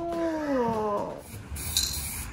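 A drawn-out pitched vocal sound that rises and then sinks in pitch over about a second. Near the end comes a short aerosol spray-can hiss.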